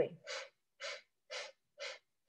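Quick, forceful exhales through the nose, four short sniff-like puffs about half a second apart, as a breath-of-fire breathing exercise.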